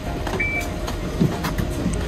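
Shimokita Kotsu route bus idling at the stop, a steady low engine rumble, with a short high beep about half a second in and a few light knocks.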